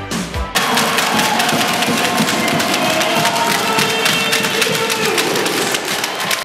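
Arena crowd cheering and clapping: many sharp hand claps over a steady mass of voices. It comes in abruptly about half a second in, as a music track cuts off.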